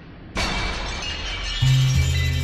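Glass-shattering sound effect crashing in about a third of a second in, its high ringing shards slowly fading, joined near the end by a deep sustained music note.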